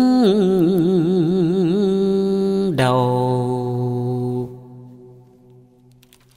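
Vietnamese poetry chanting (ngâm thơ): one voice holds a long note with wide vibrato, then drops to a lower held note about three seconds in and fades away before the end.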